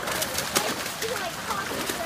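Salmon crowded in a shallow hatchery holding pool splashing and thrashing against each other over a steady wash of running water. The sharpest splash comes about half a second in.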